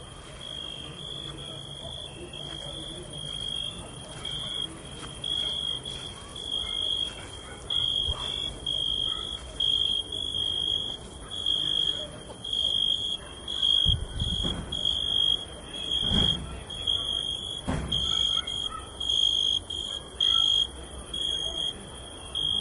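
Cricket chirping in a steady rhythm of short high chirps, nearly two a second, growing louder about halfway through. A few low thumps come in the second half.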